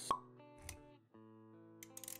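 Logo-intro music with sustained synth-like tones, punctuated by a sharp pop sound effect just after the start and a softer low thud a moment later.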